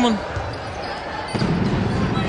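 A basketball being dribbled on a hardwood court during play, with steady arena background noise. The bounces get stronger over the last half second or so.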